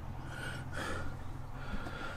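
Quiet pause with a steady low hum and a soft breath or exhale close to the microphone, about half a second in.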